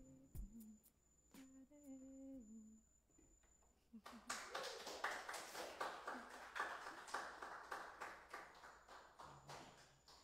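A few soft hummed notes close the song, then a small audience's applause breaks out about four seconds in.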